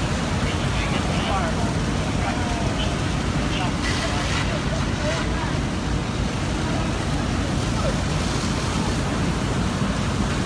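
Steady low rumble of fire engines running at a working fire, mixed with the hiss of water streams and faint voices in the background.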